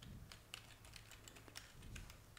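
Faint computer keyboard typing: a quick run of light key clicks, about four or five a second.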